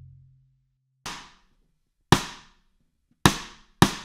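The fading tail of a deep drum hit, then a count-in of sharp ticks at 106 beats per minute: two about a second apart, then two quicker ones about half a second apart.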